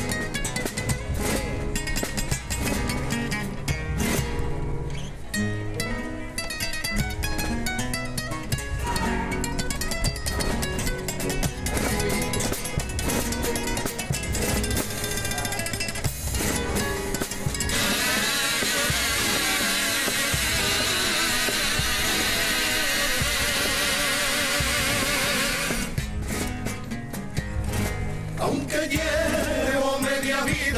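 Spanish classical guitars playing an instrumental introduction, picked melody lines and strummed chords. For the last third a denser, buzzing layer with a wavering pitch joins the guitars, then drops away shortly before the end.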